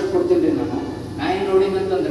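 Only speech: a man speaking into a handheld microphone.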